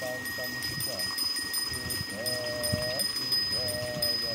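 A voice chanting a prayer in drawn-out, sung syllables: short bending notes, then a long held note in the middle and another near the end.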